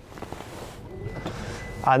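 Lexus LM's power sliding rear door closing under its electric motor: a steady mechanical whirr, joined about a second in by a faint thin high tone.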